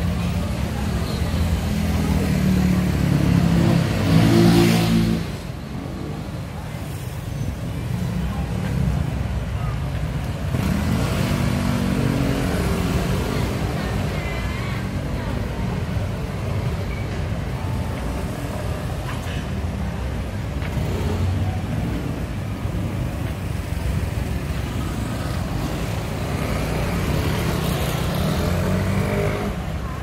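Street traffic of motor scooters and cars passing close by, their engines running; the loudest pass swells about four seconds in and drops away suddenly, with another passing engine a few seconds later.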